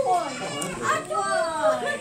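Children's voices talking over one another, high-pitched, with one voice saying "we'll see".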